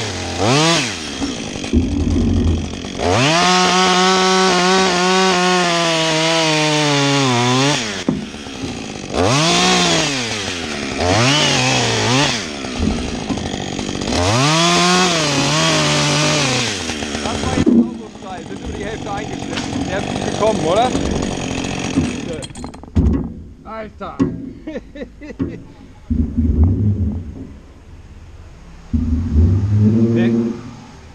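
Two-stroke chainsaw revving in three long bursts as it cuts through a standing tree trunk, its pitch sagging and recovering under load. After the cut it goes quieter, with scattered knocks and rustling.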